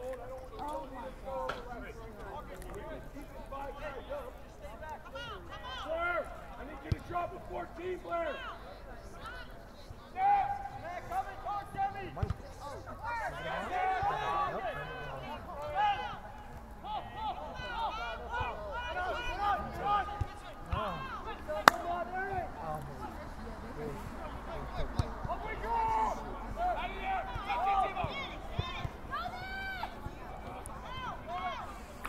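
Several voices shouting and calling across an outdoor soccer field during play, overlapping and unintelligible, with occasional sharp ball kicks; one kick stands out as the loudest sound about two-thirds of the way through.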